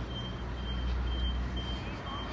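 Vehicle reversing alarm sounding a high-pitched beep about twice a second, over a low rumble of street traffic.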